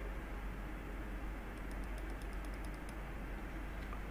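A faint, quick run of about a dozen light clicks at a computer, lasting about a second and a half in the middle, over a steady low hum.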